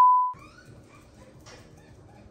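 Television colour-bars test-tone beep, a single steady high pitch, fading and cutting off about a third of a second in, leaving faint room sound.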